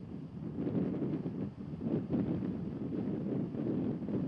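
Wind buffeting the microphone outdoors: an uneven rumble that rises and falls.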